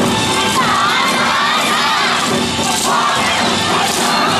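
A dance team's many voices shouting calls together in a loud, ragged chorus, over steady parade music.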